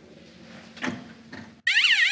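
Electronic lie-detector alarm effect: a loud, high, warbling tone that starts suddenly near the end, signalling that the answer was judged a lie.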